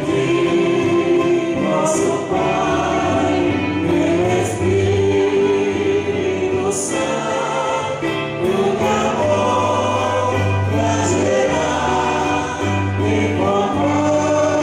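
Choir and congregation singing a hymn during communion, over held low bass notes from an amplified accompaniment. The music is loud and continuous.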